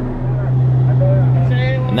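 Steady low hum of a Cessna Conquest I's twin Pratt & Whitney PT6A turboprop engines and propellers running at 1,900 RPM in the climb, humming along nicely.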